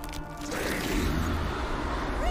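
Soundtrack of an animated episode: dramatic background music, joined about half a second in by a deep, low sound effect.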